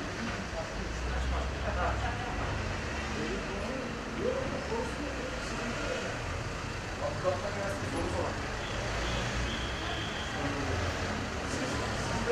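A motor vehicle's engine running as a low steady rumble, with indistinct voices in the background.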